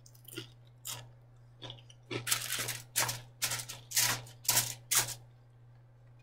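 Eating sounds close to the microphone while chewing takeout carne con chile. A few faint noisy bursts come first, then a run of about five louder ones roughly half a second apart.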